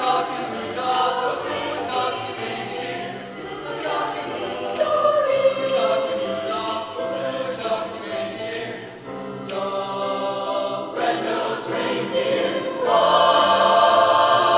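Mixed high-school choir singing in parts, swelling louder and fuller near the end.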